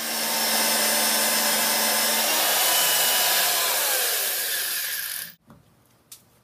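Loud, steady rushing noise of a machine running, holding level for about five seconds with faint steady tones and then cutting off abruptly.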